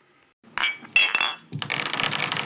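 Drinking glasses clinking with a bright ring, twice, about half a second and a second in. A steady crackling hiss follows from about a second and a half in.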